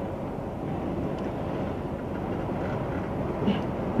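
Steady road and engine noise of a car driving at motorway speed, an even low rumble with no breaks.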